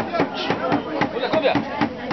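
Several people talking in a crowd over a steady, rapid tapping of about five sharp strokes a second.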